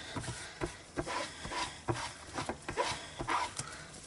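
Ink-stained cloth rubbing and dabbing a clear photopolymer stamp clean in short, irregular strokes.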